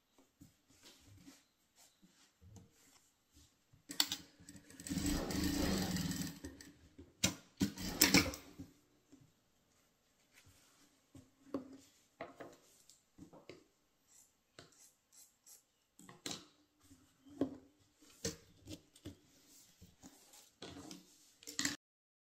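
Industrial sewing machine stitching a patchwork scrap onto a fabric strip in a run of about two seconds, starting about five seconds in, then short bursts around seven and eight seconds. Fabric rustling and small handling clicks as the scraps are placed fill the rest.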